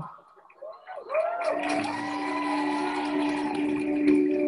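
Studio audience laughing after the robot's reply, with a steady low musical drone coming in about a second and a half in.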